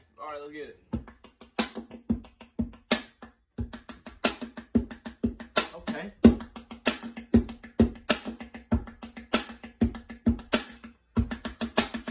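Pens drumming on a wooden tabletop, quick rhythmic patterns of sharp taps and knocks like a beatboxed drum beat, with brief pauses twice.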